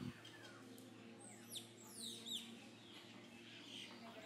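Faint birds calling: a run of quick, high, down-slurred whistles between about one and two and a half seconds in, over a low steady hum.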